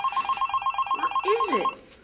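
Cell phone ringing with a fast electronic trill of rapid pulsing beeps that cuts off a little before the end. A short sound sliding down in pitch briefly overlaps it near the end.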